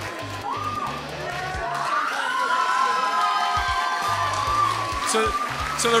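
Audience cheering and whooping, with music playing underneath; the cheering swells toward the end.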